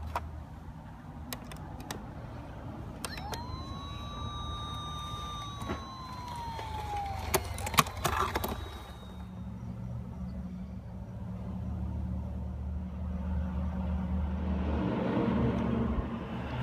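Fire-truck engine rumble with one siren wail a few seconds in that rises, holds and slowly falls away. A few light clicks come and go. The engine hum grows louder toward the end.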